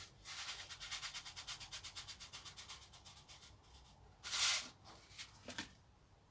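Chicory seeds rattling inside a seed packet as it is shaken, a fast, even rattle for about three seconds, then a brief louder rustle about four seconds in and a couple of small clicks.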